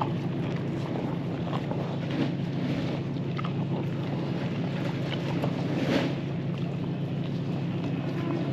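Steady low mechanical drone, like a motor running, with wind-type noise and a few scattered short clicks and rustles as calves feed at a wooden trough.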